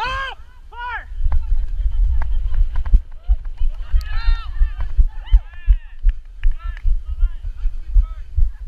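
Footfall thumps and wind rumble on a body-worn camera's microphone as the wearer runs on grass, with players shouting short calls several times.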